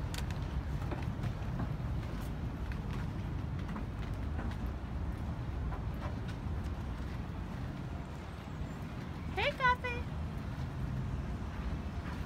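Steady low rumble of a moored water taxi's engine idling, with scattered light footsteps on the gangway. A short rising call is heard about nine and a half seconds in.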